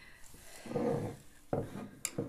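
Handling noise from the crochet work and hook being moved against a wooden tabletop: a soft rubbing in the middle and a light knock about one and a half seconds in.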